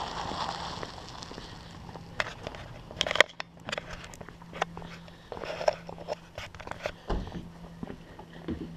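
Footsteps on a concrete driveway with irregular clicks and knocks, the sharpest about three seconds in, over a faint steady low hum.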